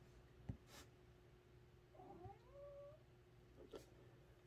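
Near silence with a few soft taps. About halfway there is a faint animal call that rises in pitch and lasts about a second.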